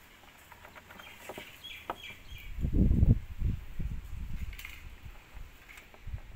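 Plastic indicator lamp being worked into its bumper recess by hand: faint clicks and squeaks, then a dull low rumble of rubbing and handling about halfway through, followed by a run of small knocks as the unit is pressed into place.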